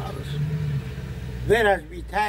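A man's voice speaking briefly about one and a half seconds in, over a steady low hum.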